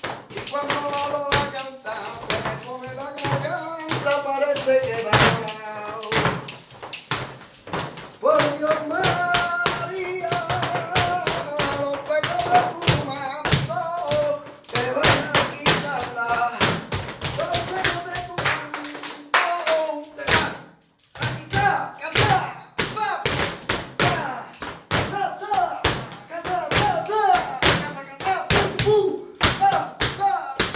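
Flamenco bulerías music with a singing voice over dense, sharp strikes of footwork and hand claps, as a pataíta is danced. There is a brief break a little after the middle before the rhythm picks up again.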